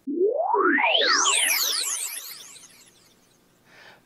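Synthesizer sweep sound effect: a stack of tones gliding steeply upward in pitch over about a second and a half, then fading away by about three seconds in.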